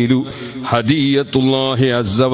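A man's voice chanting melodically, holding long wavering notes with short breaks between phrases, in the manner of a religious recitation.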